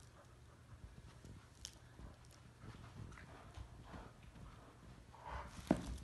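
Two dogs tussling over a plush toy in a tug of war: faint scattered clicks and scuffs of paws and claws on carpet, getting louder near the end with one sharp knock.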